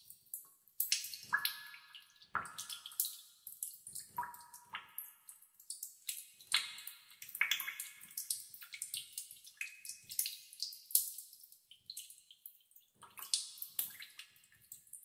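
Water dripping in a cave: drops falling into pools in irregular plinks and ticks, several a second, some with a brief ringing note after the strike.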